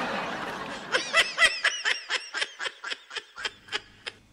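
A person laughing: a breathy, hissing snicker, then a run of quick high-pitched "ha" pulses, about four a second, that fade toward the end.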